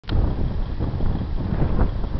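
Wind buffeting the microphone: a loud, uneven low rumble, with a sharp click at the very start.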